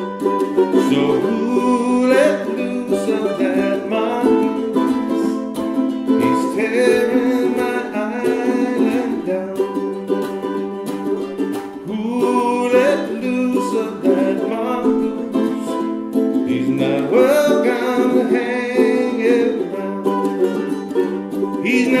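Two ukuleles playing an instrumental passage of a folk-style song, plucked chords with a melody line moving over them.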